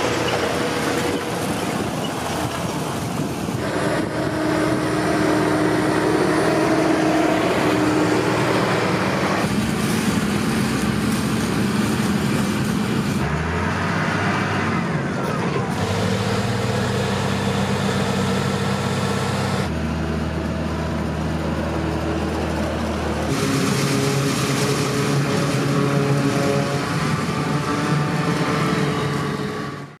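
Farm tractor engines working in the field under load, in a string of short clips cut together, so the engine note changes suddenly several times. It fades out at the end.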